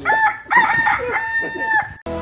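A rooster crowing: a short opening phrase, then a long held note that cuts off sharply near the end.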